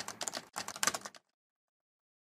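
Keyboard typing sound effect: a quick run of key clicks in two bursts split by a brief break, stopping a little over a second in.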